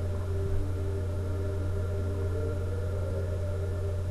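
Steady low electrical hum, with faint music playing underneath.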